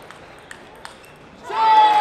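Table tennis ball clicking lightly off bats and table a few times in a rally, then about one and a half seconds in a sudden loud, high-pitched shout that slowly falls in pitch as the point is won.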